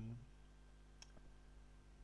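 Near silence with a low steady hum, broken by a single short click about a second in.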